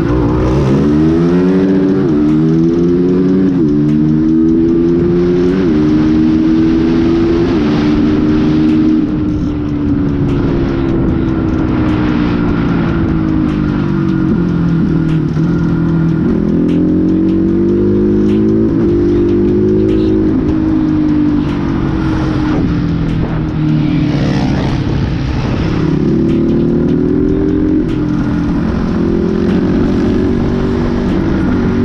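Motorcycle engine on the move. Its pitch climbs and drops back several times in the first few seconds as it shifts up through the gears, then eases off and pulls again.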